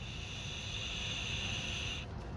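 Steady hiss of a long draw on a Lost Vape Q Ultra pod vape: air pulled through the pod while the coil fires and sizzles.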